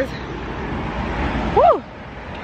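Steady road-traffic noise. About one and a half seconds in, a short voice-like sound rises and falls in pitch once.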